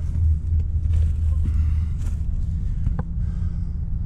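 Steady low rumble throughout, with faint scrapes on loose ballast stones and a single sharp click about three seconds in.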